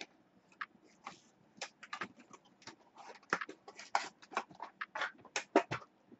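Irregular light clicks and scrapes of hands handling things on the tabletop, faint at first and coming thicker in the second half.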